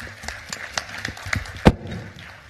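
Audience applauding, a fast patter of hand claps, with one loud thump about three-quarters of the way through.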